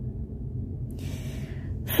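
A woman drawing a breath, a soft hiss about a second in, over a low steady hum, before her talking resumes at the very end.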